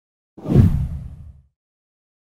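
A single whoosh transition sound effect about half a second in, sweeping down into a deep rumble and fading out within a second.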